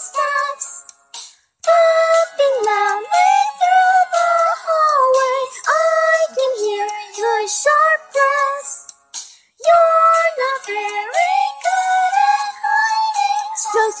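High-pitched, synthetic-sounding singing voice carrying the melody of a song over backing music, breaking off briefly about a second in and again past nine seconds.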